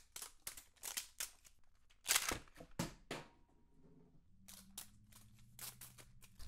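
A MiniVerse Make It Mini plastic toy capsule being handled: scattered clicks and crinkles of plastic and packaging under long fake nails, with the loudest crackle about two seconds in and another near three seconds.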